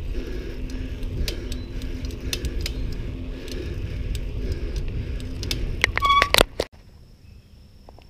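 Bicycle ride on a paved trail: wind rumble on the microphone with rapid rattling clicks from the bike. About six seconds in, a brief high squeal from the bicycle brakes as the bike stops. The sound then drops suddenly to quiet with a faint steady high tone.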